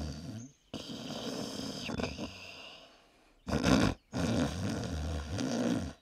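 People making exaggerated pretend snores, a few long rough breaths with short breaks between them.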